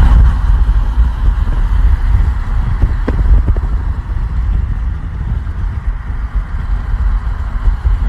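Loud, low road and wind rumble of a car travelling at speed on a motorway, heard from inside the vehicle, with a brief click about three seconds in.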